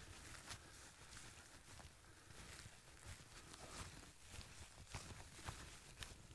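Near silence: faint, irregular soft footsteps on dry fell grass.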